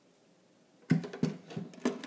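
Sewing machine carrying-case lid being handled and fitted onto its base. After a quiet second comes a quick run of knocks and clicks, some with a short ringing.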